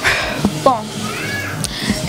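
A woman speaking a word or two over background music. A high arching tone from the music comes in about a second in.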